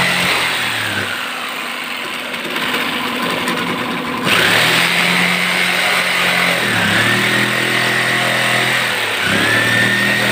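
Corded electric jigsaw running as it cuts through plywood. It is quieter for a few seconds, then louder again about four seconds in, and its motor pitch sags briefly twice near the end as the blade takes the load.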